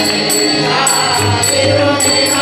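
Group devotional singing with harmonium accompaniment, with small hand cymbals struck in a steady beat about twice a second, each strike ringing on.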